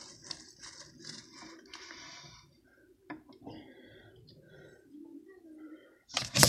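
Faint voices in the background of a small room, with a couple of soft clicks about three seconds in.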